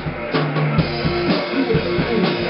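Rock duo playing an instrumental passage: a guitar through an amplifier over a Mapex drum kit keeping a steady beat.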